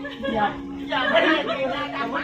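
People chatting, several voices talking over one another, loudest about halfway through.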